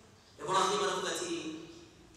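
A man's voice speaking one short phrase, starting about half a second in and trailing off with a drawn-out vowel, between quiet pauses.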